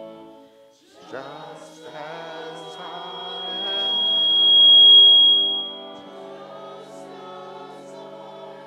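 Choir and congregation singing a hymn chorus over held organ chords, the voices coming in about a second in. A high, steady whistling tone swells to become the loudest sound between about three and six seconds in, then drops away abruptly.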